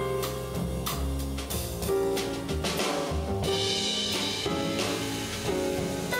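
Live jazz piano trio playing: a Rossini grand piano, an upright double bass and a drum kit. Cymbals brighten in the middle.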